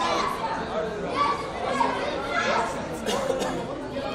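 Several voices talking and calling at once, indistinct chatter with no clear words.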